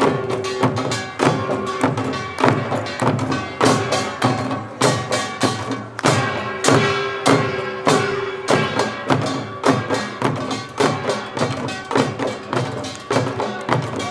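Korean pungmul drumming: buk barrel drums and janggu hourglass drums beaten hard in a fast, driving rhythm. A held tone rings in and out above the drums.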